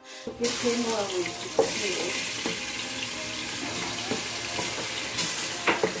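Seasoned chicken pieces dropping into hot oil in a pot and sizzling, the hiss starting suddenly about a quarter second in and holding steady. A few sharp knocks come as pieces land.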